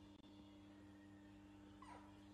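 A baby macaque gives one short, high squeak that falls steeply in pitch, near the end, over a faint steady low hum.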